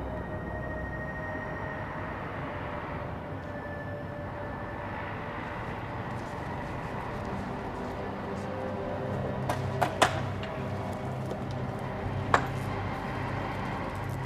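Quiet, tense film score of drawn-out held notes, with a few sharp clicks or knocks about ten and twelve seconds in.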